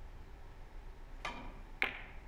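Three-cushion carom billiards shot: the cue tip clicks against the cue ball about a second and a quarter in. About half a second later comes a louder, sharp clack of the cue ball striking the red object ball.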